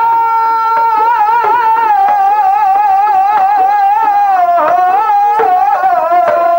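Dhadi music: one long held note with a steady wavering vibrato from the singer and sarangi, with a few dhad drum strokes coming in near the end.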